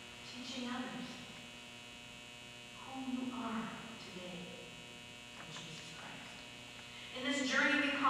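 Steady electrical mains hum, with short, faint stretches of an indistinct voice; the voice grows louder near the end.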